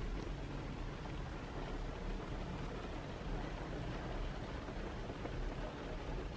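Car cabin noise in the rain: a steady low rumble from the running car with an even hiss of rain on the glass and body.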